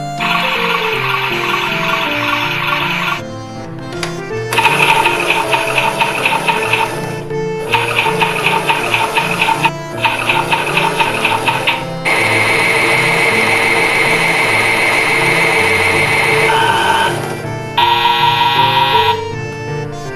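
Battery-powered toy washing machine running, its small motor whirring as the drum turns, in about six stretches of a few seconds each with short breaks between. Light background music plays throughout.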